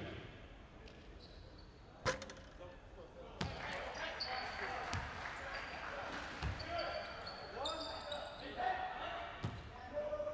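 Basketball bouncing on a hardwood court a few times at uneven intervals, with a sharp knock about two seconds in, among players' voices.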